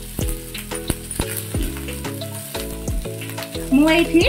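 Chopped onion, capsicum and garlic sizzling in hot oil in a kadai while a silicone spatula stirs them, under background music with held notes and a beat.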